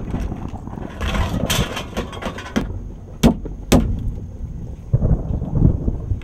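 A small plastic bin is emptied into a dumpster. Its contents clatter in as a rough rush of noise lasting about a second and a half, followed by two sharp knocks about half a second apart and then some low thumps near the end.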